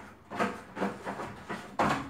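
Cloth being rubbed and wiped over wardrobe shelving, in a series of short scraping strokes about half a second apart, the loudest just before the end.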